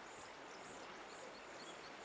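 Faint outdoor ambience with insects chirping in a steady high pulse, about four chirps a second, over a soft even hiss.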